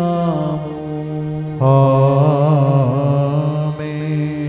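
Sung liturgical response, the Amen that closes the priest's prayer at Mass: held voices over sustained musical accompaniment, swelling louder about one and a half seconds in.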